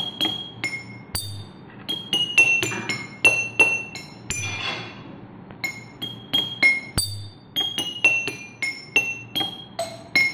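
Homemade water-glass instrument: drinking glasses and glass bottles holding different amounts of water are struck with a thin stick, ringing out a simple tune. The notes come as a quick string of bright clinks at several different pitches, about two or three a second.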